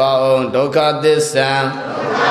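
Male voice chanting Buddhist Pali recitation on a steady, level pitch, with long drawn-out syllables and brief breaks between phrases.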